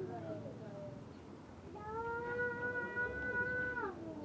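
A long drawn-out call on one pitch lasting about two seconds, sliding up at the start and dropping away at the end. It comes after a second of fainter wavering voice-like sounds.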